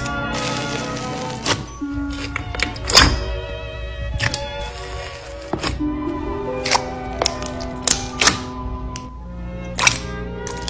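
Slime being pressed and squished with a metal ball tool, giving irregular sharp pops and clicks, loudest about three seconds in and near eight seconds, over steady background music.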